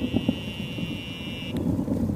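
Cicada buzzing in the trees, a high steady buzz that cuts off suddenly about one and a half seconds in, over a low, uneven rumble of wind on the microphone.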